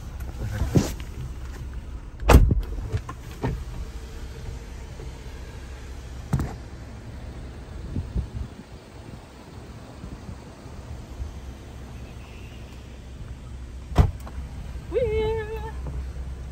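Jeep's diesel engine idling with a steady low rumble, heard from inside the cab, with a few sharp door thumps; the loudest comes about two seconds in and another near the end.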